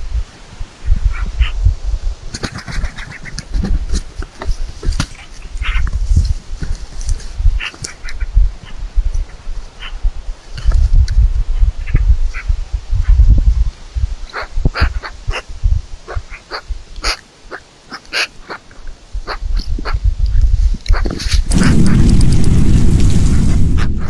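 Eurasian magpies giving short, harsh chattering calls around a feeding bearded vulture, over gusty wind rumble on the microphone. Near the end there is a louder rushing sound as the vulture spreads its wings close by.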